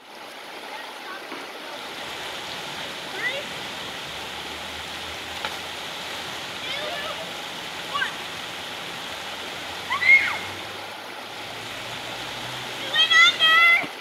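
Steady rush of water over shallow river rapids, with short calls of voices over it now and then, loudest near the end.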